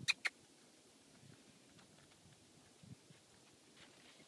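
Two quick, sharp mouth clicks, a person calling a horse to come, right at the start. After that only faint outdoor background with a small knock about three seconds in.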